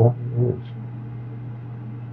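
A steady low mechanical hum with an even faint hiss, holding at one level throughout.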